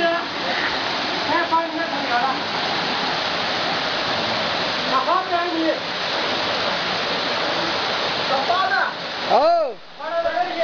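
Waterfall pouring into a rock pool: a steady rush of falling water. Men's voices call out briefly over it a few times, the loudest a rising-and-falling shout near the end.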